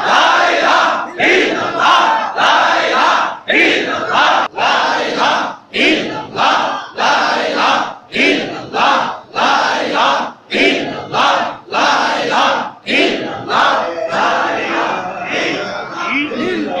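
A gathering of men chanting dhikr together in loud, rhythmic unison shouts, about three every two seconds, easing off near the end.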